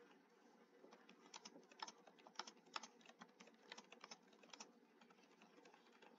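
Faint typing on a computer keyboard: a quick, uneven run of key clicks, about a sentence's worth, starting about a second in and stopping near the five-second mark.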